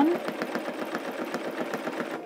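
Bernina 1230 home sewing machine running at a steady speed for free-motion quilting, its needle punching through the quilt in rapid, even strokes.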